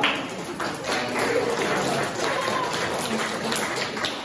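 A small group applauding, scattered hand claps with a few voices among them.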